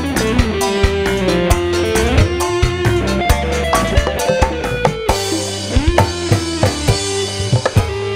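Live dangdut band playing an instrumental passage: drums keep a steady beat under electric guitar and a held, bending melody line.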